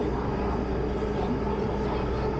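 MTR subway train running between stations, heard from inside the carriage: a steady rumble of wheels and running gear with a steady hum.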